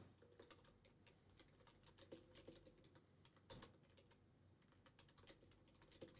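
Faint, scattered keystrokes on a computer keyboard: a handful of soft clicks over near silence, with the clearest ones about two seconds and three and a half seconds in.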